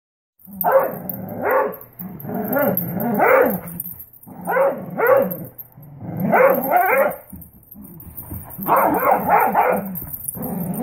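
Dogs barking in play while tugging on a rope toy, in clusters of two or three short barks with brief gaps between.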